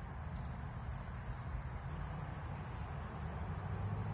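Steady, unbroken high-pitched trilling of insects, with a faint low rumble underneath.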